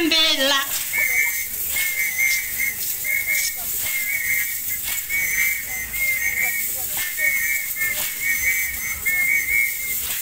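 A pea whistle blown in short, trilling blasts at one high pitch, about two a second, keeping time for a traditional dance, with faint knocks between the blasts. A singing voice stops just as the whistling begins.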